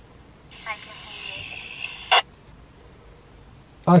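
A distant voice replying over a PMR446 handheld radio's speaker, thin and band-limited, for about a second and a half, ending in a short burst of noise as the transmission drops.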